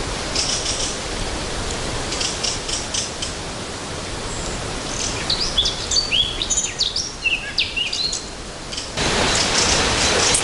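Small woodland birds singing: quick chirps and short sliding whistles in the second half, over a steady rushing background noise that changes abruptly near the end.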